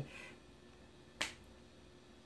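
A single short, sharp click or snap about a second in, against quiet room tone.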